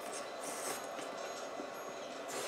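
A person slurping noodle soup: a few short, airy slurps over a steady background hum.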